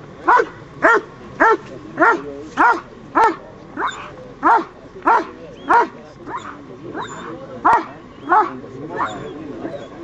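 A German Shepherd barking over and over: about a dozen loud single barks at an even pace of not quite two a second, with a short pause about two-thirds of the way through.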